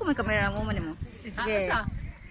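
A man's voice laughing in two drawn-out, wavering stretches, with wind rumbling on the microphone.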